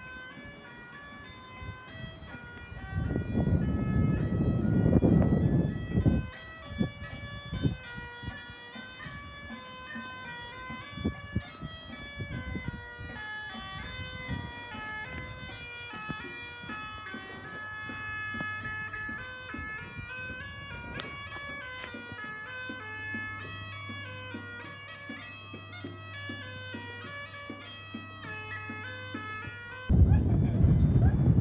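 Bagpipes playing a melody of changing notes over a steady low drone. Gusts of wind hit the microphone a few seconds in.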